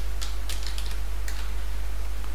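Computer keyboard typing: a short run of keystrokes in the first second and a half, then it stops. A steady low hum runs underneath.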